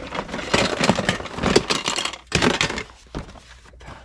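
Plastic toy packaging and boxed toys rustling and clicking as they are handled and rummaged out of a plastic storage bin, a busy run of small knocks for about three seconds that dies down near the end.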